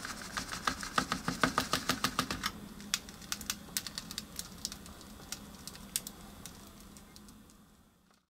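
Pink plastic candy tray of sugar-coated gummies being handled with the fingers, giving quick light clicks and rattles, about five a second for the first couple of seconds, then sparser and fading out near the end.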